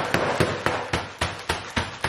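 A plastic bag of frozen fruit being banged against a kitchen counter again and again, about four knocks a second, to break up fruit that thawed and refroze into a solid clump.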